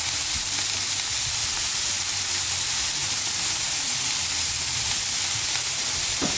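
Burger patties frying on the hot steel plate of a 17-inch Blackstone propane griddle, giving a steady sizzle with a faint low hum underneath.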